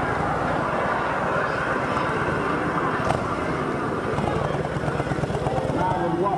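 Large touring motorcycle's engine running with a steady low throb.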